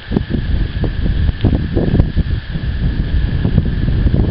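Wind buffeting the microphone: an uneven, loud low rumble with small knocks.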